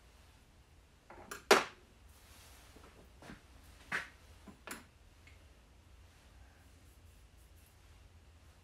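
Small metal engine parts and tools being handled on a workbench: a sharp knock about a second and a half in, then a few lighter clicks and taps over the next few seconds.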